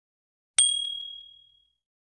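A single notification-bell 'ding' sound effect: one sharp strike about half a second in, then a clear high tone that fades away over about a second.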